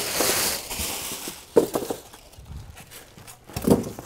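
Styrofoam packing pieces being handled and moved: a rustling scrape for about the first second and a half, then a couple of soft knocks.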